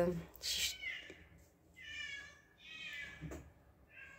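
Stray cats meowing outside: several faint, high, drawn-out meows, the two longest about two and three seconds in.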